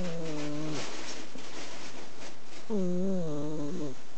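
Flat-faced Exotic Shorthair cat snoring in her sleep: two drawn-out, humming snores about three seconds apart, one at the start and one near the end.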